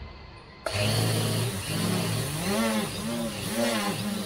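Four RacerStar 2216 810 kV brushless motors spinning Gemfan 10x4.5 propellers on a hand-held quadcopter, starting suddenly less than a second in. From about two seconds in their pitch rises and falls about twice a second as the flight controller, on its initial untuned PID and filter settings, fights the hand's forced tilts.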